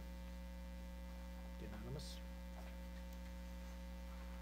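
Steady electrical mains hum in the sound system, a low, even buzz under otherwise quiet room tone.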